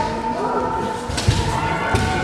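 A thud of a body landing on gym mats during a jiu-jitsu throw, about a second in, with a second softer impact near the end, over the murmur of voices.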